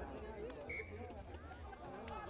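Several voices of rugby players and sideline spectators shouting and calling over one another, indistinct, during a scrum. A short high-pitched tone sounds about halfway through.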